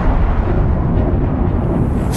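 Low, continuous rumble of a volcanic eruption sound effect, with most of its weight in the bass.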